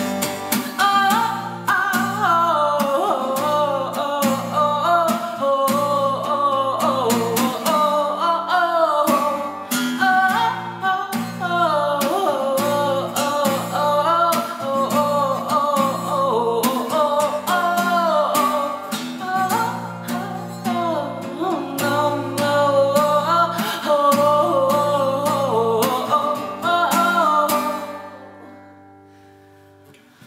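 A woman singing over a strummed guitar, the closing bars of a soul song; the playing and singing stop about two seconds before the end.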